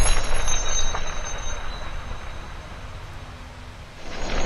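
Intro sound effect: a loud cinematic hit with a rumbling, hissing wash and thin high ringing tones, fading away steadily over about four seconds.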